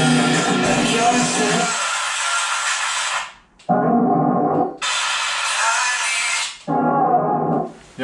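Radio music playing through an old Trinity PA speaker cabinet under test. After about two seconds of full sound it switches in turn between treble only, from the high-frequency horn, and a narrow middle band, from the mid-range driver alone, with short cut-outs between: the drivers are being checked one at a time after repair.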